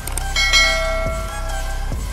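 A single bell chime rings out about a third of a second in and dies away over about a second and a half, over background music with a deep, repeating bass beat.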